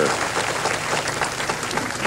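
Arena audience applauding a bowler's strike, a steady patter of many hands clapping.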